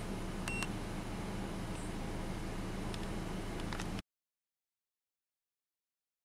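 A single short electronic beep from a handheld OBD2 scan tool about half a second in, over a steady low hum of the vehicle. Everything cuts off abruptly about four seconds in.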